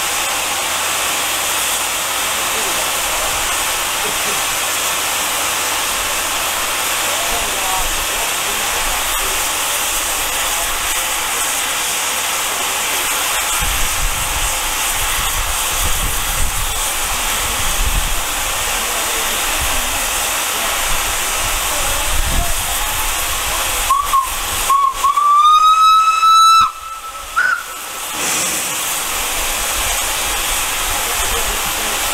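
Steady steam hiss from a Belgian steam tram locomotive standing in steam. About four-fifths of the way through, a steam locomotive whistle sounds: a short toot, a long blast of about three seconds rising slightly in pitch, then another short toot.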